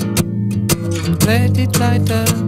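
Rock music from a 1971 vinyl album: a guitar-led band plays a sliding melodic line over bass and a steady drumbeat.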